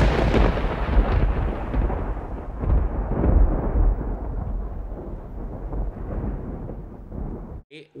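A deep, rumbling roar from a film soundtrack, loudest at the start and slowly dying away over about seven seconds before stopping.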